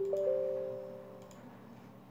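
A three-note Windows 10 system chime, the notes entering in quick succession and ringing out over about a second and a half: the alert that comes with the User Account Control prompt when an installer is launched.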